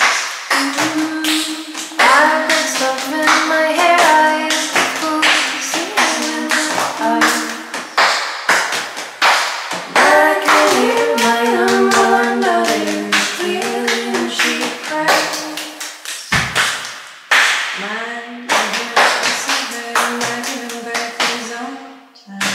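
Two women singing in close harmony, with hand claps keeping the beat. The singing breaks off briefly about two-thirds through, where there is a single low thump.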